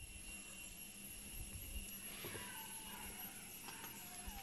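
Faint outdoor background noise: an uneven low rumble with a steady faint hum, and no distinct event.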